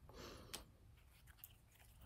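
Mostly near silence with faint handling noise. A brief soft scrape ends in a light click about half a second in, as a small cast cement block is set down on the concrete floor, followed by a couple of faint ticks.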